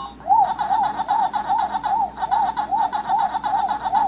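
Pac-Man's 'waka waka' chomping sound from a miniature Pac-Man arcade cabinet as the player eats dots. It is a quick electronic up-and-down bleep repeating about four times a second.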